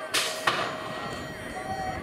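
BMX start gate dropping: a short burst of noise just after the start, then a sharp clang about half a second in, followed by a mixed track background as the riders roll down the ramp.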